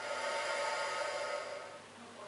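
A young crocodile hissing for just under two seconds, swelling and then fading.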